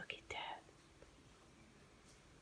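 A woman's softly whispered word, then near silence: room tone.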